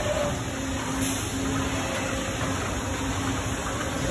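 Steady machinery noise from a Fanuc Roboshot electric injection molding machine and the plant around it: a continuous hiss with a steady low hum running under it.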